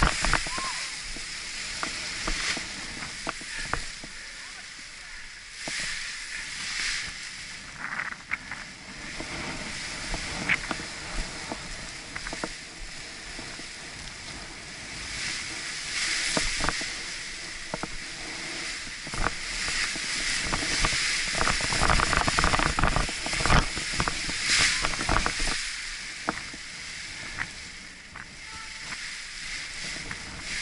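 Wind rushing over the action camera's microphone in gusts, with the nylon canopy and lines of an Edel Power Atlas paraglider rustling and crackling as the wing is kited on the ground. The wind is loudest about two-thirds of the way through.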